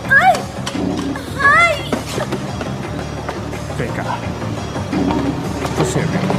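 Background film music with sustained low notes. Over it come two short, high-pitched vocal cries, each rising and falling, in the first two seconds.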